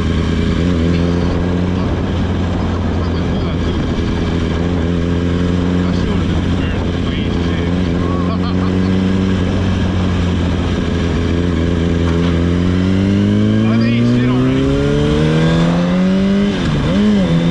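Sport motorcycle engine running at a steady pitch under way, then rising in pitch from about three-quarters of the way in as the bike accelerates.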